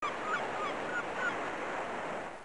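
Birds calling in short repeated calls over a steady rushing noise, as in a sound-effect ambience.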